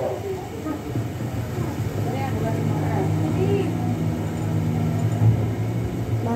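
Indistinct voices over a steady low mechanical hum, which grows stronger about two and a half seconds in.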